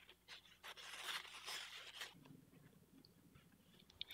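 Faint, irregular snips and crackle of scissors cutting through tracing paper in the first two seconds, then near silence.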